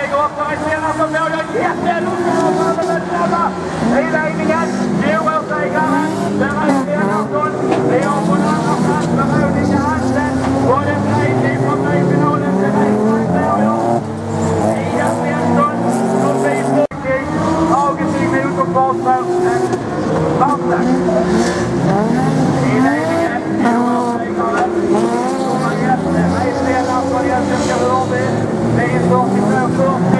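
Several folkrace cars racing together, their engines revving up and down in overlapping rising and falling notes. The sound cuts abruptly to another stretch of racing about 17 seconds in.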